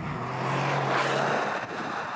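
Toyota GR Yaris, with its turbocharged 1.6-litre three-cylinder, driving past on the road. A steady engine note and tyre noise swell to a peak about a second in, then fade as it moves away.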